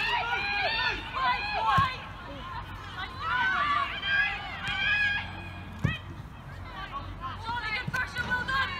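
Women footballers shouting and calling to each other during play, high-pitched calls coming one after another, with a dull thump about two seconds in and another near six seconds.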